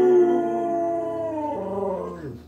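A pit bull howling: one long held howl that slowly sinks in pitch, then a shorter howl near the end that lifts briefly and glides down.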